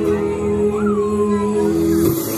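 Slow ambient music made of sustained droning notes. About a second in, a single high note rises sharply, then slides down and holds briefly.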